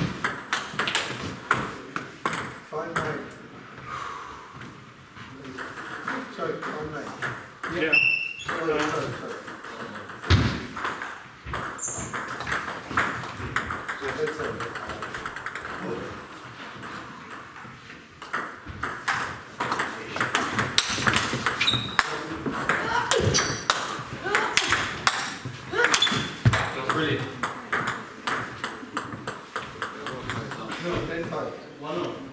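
Table tennis rallies: the celluloid-type plastic ball clicking off rubber-faced bats and the table top in quick runs of sharp pings, broken by short pauses between points.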